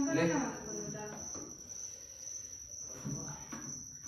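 A steady, high-pitched, cricket-like trill holds one pitch throughout. A man says a word at the start, and faint knocks of movement come near the end.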